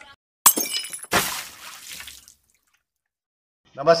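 Breaking-glass sound effect: a sharp crash with high ringing about half a second in, then a second crash whose shattering noise fades away over about a second.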